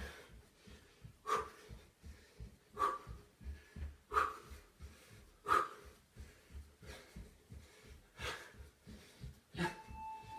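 A man breathing hard in sharp, rhythmic exhales, about one every second and a half, while jogging on the spot. Under the breaths are soft, regular thuds of his stockinged feet landing on a carpeted floor.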